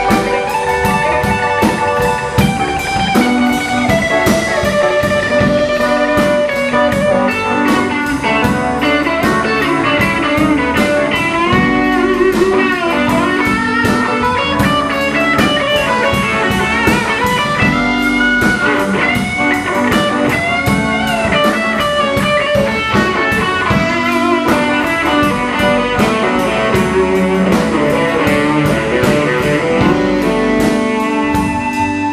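Live blues band playing an instrumental passage: electric guitar lines with notes bent up and down in pitch, over bass guitar and a drum kit keeping a steady beat.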